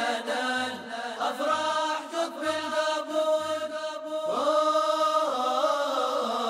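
A cappella vocal music: voices sing a drawn-out, ornamented melodic line over a low beat about once a second, with one long held note a little past the middle.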